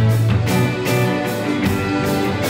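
A live rock band playing an instrumental passage: electric guitars and bass over a drum kit, with cymbal and drum strokes about twice a second.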